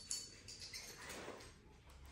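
Faint handling rustles and a light click from a powered-air respirator's waist belt being fitted and adjusted.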